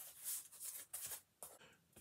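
Faint, short scrapes and rustles of cardboard being handled, as a cardboard comic mailer held with painter's tape is opened.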